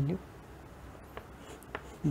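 Faint scratching of chalk on a blackboard as a short arrow is drawn, with a few light ticks of the chalk in the second half.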